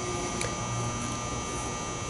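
Steady background hum and hiss of a room, with a faint tick about half a second in.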